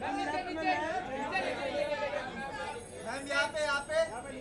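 Several voices talking and calling out over each other: photographers shouting directions to someone posing for them.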